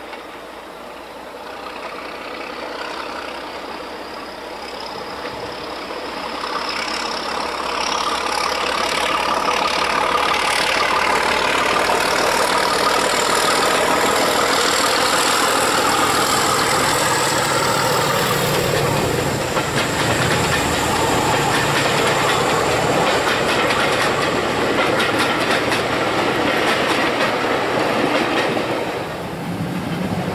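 Heritage diesel locomotive hauling a passenger train, approaching and passing close by: the engine and the wheels on the rails grow louder over the first several seconds, then stay loud and steady with a rapid clatter of the coaches' wheels going by. The sound dips briefly near the end as the last coach passes.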